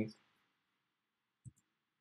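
A single keystroke on a computer keyboard, one short click about a second and a half in, with the room otherwise almost silent.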